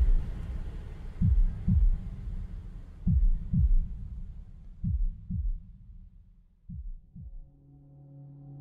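Heartbeat sound effect: pairs of low double thumps (lub-dub) repeating about every two seconds, growing fainter. Near the end a low steady music drone comes in.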